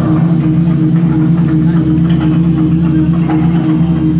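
Live blues band playing loudly in an instrumental stretch, a low note held steadily throughout as a drone under the electric guitar and drums.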